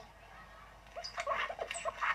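A quiet second, then a rapid string of short, high, animal-like yelps or squeaks, like a small animal whimpering.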